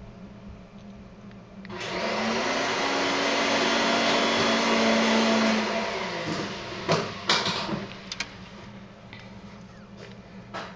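A household motor appliance running for about four seconds, spinning up and then winding down, followed by a few sharp clicks.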